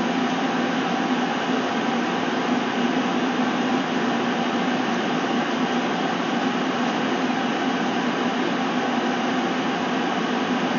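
Steady whooshing noise of a fan-type appliance running, with a low hum.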